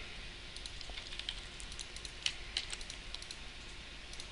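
Computer keyboard typing: an irregular run of light key clicks that stops shortly before the end.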